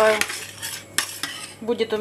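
A metal spoon stirring vegetable soup in a small stainless-steel saucepan, clinking and scraping against the pot several times.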